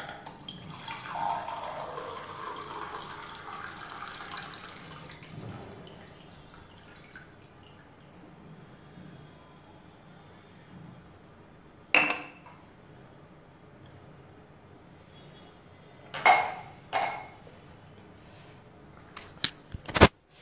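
Water running and pouring into a container for about five seconds, its pitch sinking as it flows. Later comes one sharp knock of kitchen things, then two more close together.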